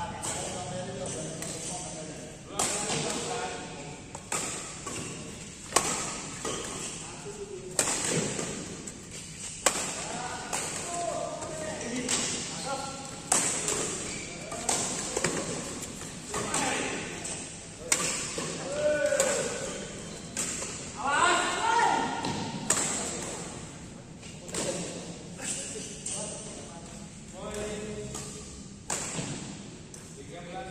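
Badminton rally: rackets striking a shuttlecock in sharp cracks every second or few, ringing in a large hall, with players' voices between the shots.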